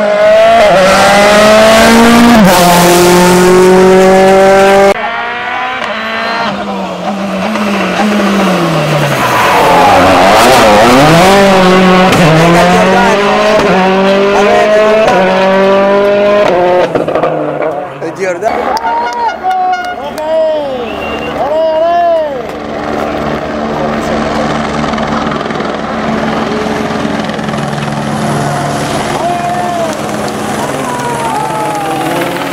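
Rally cars' turbocharged four-cylinder engines revving hard and dropping back as they shift gear through corners, in several separate passes. The sound changes abruptly at about five seconds and again past the middle.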